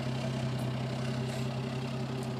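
A 2010 Hyundai Genesis Coupe 3.8 GT's V6 idling steadily, heard at its quad-tip exhaust.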